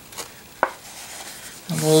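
Quiet handling as a stitched fabric folder with paper bags inside is opened out on a table, with one short sharp tap a little over half a second in.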